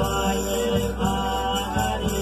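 Men singing a Folia de Reis song in long, held lines, with a guitar-type string instrument playing along.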